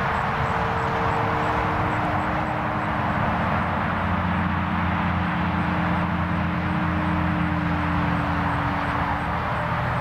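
Radio-controlled foam model airplane flying overhead: a steady motor-and-propeller drone whose pitch slowly falls, over a constant hiss.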